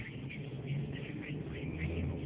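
Car engine and road noise heard from inside the cabin as the car pulls away at low speed, a steady low hum that grows slightly louder near the end.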